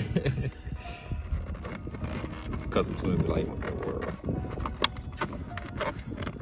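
Gloved hand slapping and pressing a plastic mirror cap cover onto a 2018–2023 Toyota Camry's side mirror, a few sharp knocks as it is pushed home so its tabs snap into place, with a man laughing.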